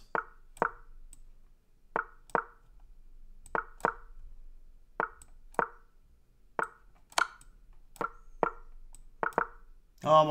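Chess website's move sound: a short wooden plop, played about a dozen times, mostly in quick pairs, as both sides move in rapid succession with only seconds left on their clocks.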